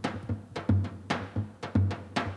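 Zabumba drum playing a baião rhythm: deep low strokes of the mallet on the bass head, with sharp, higher clicks of the thin stick on the other head in between.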